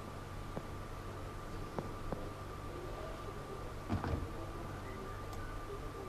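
Quiet room tone of a hall: a steady low electrical hum with a thin steady tone, a few faint clicks, and a soft knock about four seconds in.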